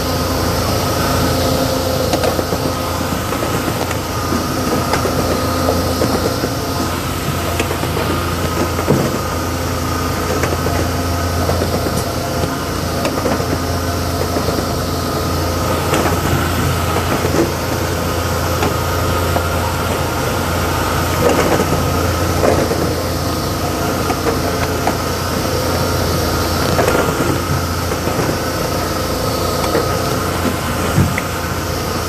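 Langen Model B1 continuous-motion cartoner running at production speed: a steady mechanical hum with a constant low drone and a few held tones, overlaid with a continual patter of small clicks and clacks from the chain conveyor and carton handling.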